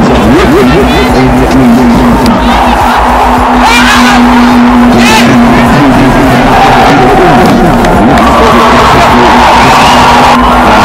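Voices of players and onlookers calling out at an outdoor cricket match, under a loud low rumble and a steady hum, with a couple of sharp knocks near the middle.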